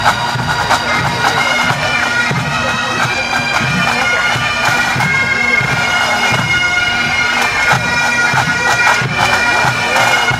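Massed pipe bands playing together: Highland bagpipes sounding a tune over a steady drone, with the drum corps beating throughout.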